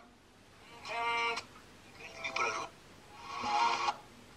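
The small loudspeaker of an RDA5807FP FM radio receiver kit plays three brief snatches of broadcast audio, with short silences between them, as the preset channel is stepped from one station to the next.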